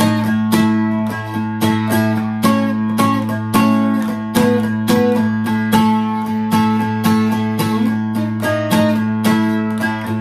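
Acoustic guitar flatpicked in quick, even strokes, a quick run of notes ringing over a low bass note that drones steadily underneath.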